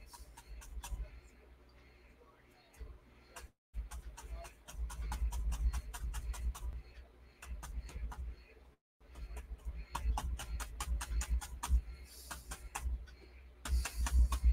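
Soft irregular clicks and low bumps of a paintbrush and paint being handled and mixed at the palette, with the sound cutting out completely twice.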